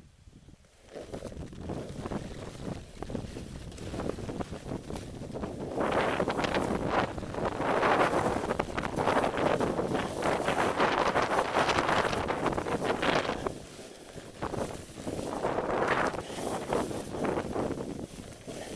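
Wind buffeting the microphone of a snowboarder riding down through powder, mixed with the hiss of the board sliding and spraying snow. It builds about a second in, is loudest through the middle, dips briefly and rises again near the end.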